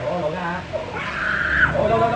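A small child screaming and crying while held still for a haircut, with a loud, high, drawn-out cry about a second in.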